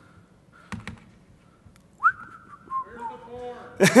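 A person whistling: a note swoops quickly up, holds for about half a second, then steps down in pitch, with a voice and laughter following near the end.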